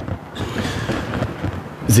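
A pause in speech: low, rumbling room noise with faint voice sounds, before speaking resumes near the end.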